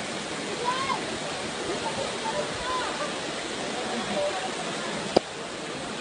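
Waterfall rushing steadily into a pool, with faint voices now and then and a single sharp click about five seconds in.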